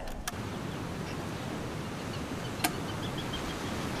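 Steady background noise of outdoor ambience, like a distant hum of traffic, with a sharp click a little past halfway and a few faint high chirps just after it.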